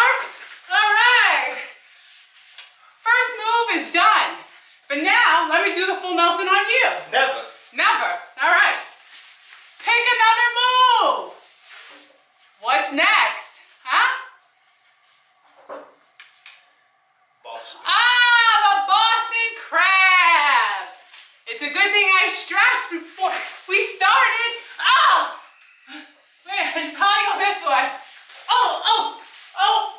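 Speech: a high-pitched voice calling out in short bursts, with a quieter pause about halfway through.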